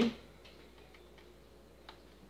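A few faint, light clicks, with a sharper single click near the end, as a plastic desk calculator is picked up from the counter and handled.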